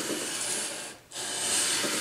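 Sandpaper on a flat leveling bar rubbed along the metal frets of a guitar neck: 320-grit paper scuffing the fret tops down to an even height. Two long strokes of about a second each, with a short break between.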